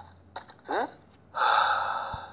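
A short rising squeak, then a loud breathy gasp lasting about a second.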